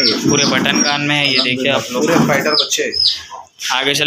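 Small birds chirping repeatedly, a string of short, high, falling chirps about every half second, with a short break in the middle, over background voices.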